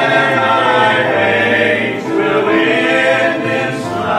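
A male vocal quartet singing a gospel hymn in harmony, with piano accompaniment.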